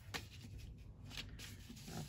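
Faint rustling and light taps of folded patterned paper being handled and set down on a desk.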